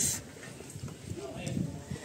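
Footsteps on stone steps, with faint voices in the background.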